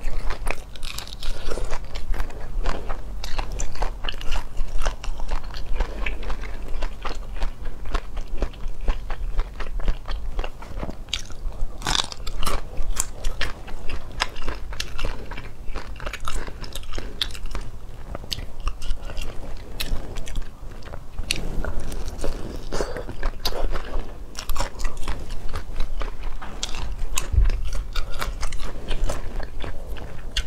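Close-miked eating of braised whole shrimp: crunching through the shells and chewing, with many sharp crunches throughout.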